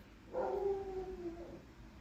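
A faint, drawn-out animal whine, a little over a second long, falling slightly in pitch.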